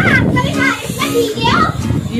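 Children's excited shouts and squeals, several short high calls in quick succession, over a steady hiss of heavy rain.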